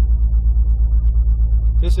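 2012 Corvette Grand Sport's 6.2 L LS3 V8 with dual-mode exhaust running at low revs as the car creeps along, a steady deep rumble with a regular throb, heard from inside the cabin.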